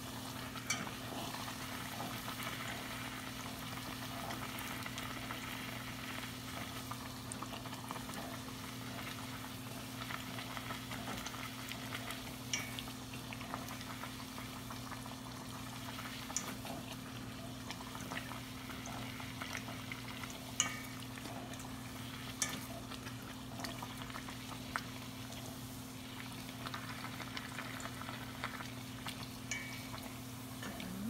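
Bánh tiêu dough deep-frying in hot oil in a stainless steel pot: a steady sizzle with scattered sharp clicks as the puffed donut is turned with wooden chopsticks. A steady low hum runs underneath.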